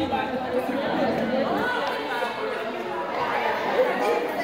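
Many girls talking at once: indistinct overlapping chatter filling a large gym hall.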